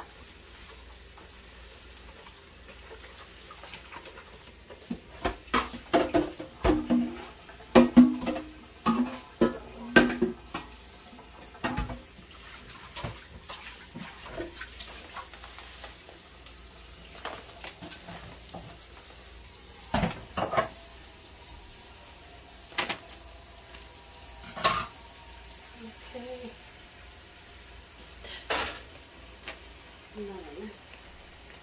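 Dishes being washed at a kitchen sink: metal bowls and pans clattering and knocking against each other, loudest and busiest in a run of knocks in the first half, then scattered single knocks, with the tap running in the second half.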